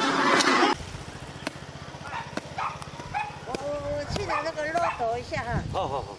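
Loud crowd noise cuts off under a second in. Then a small dog whines and yelps in a run of short, wavering calls that come faster near the end, with a few sharp knocks among them.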